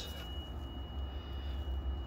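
Steady low hum with a thin, steady high-pitched tone above it, from a powered-up VRF air-conditioning outdoor unit running an inverter test.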